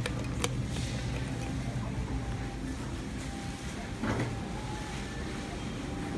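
Elevator hall call button pressed with two sharp clicks near the start, over a steady low hum. About four seconds in there is a brief sound as the hydraulic elevator's door begins sliding open.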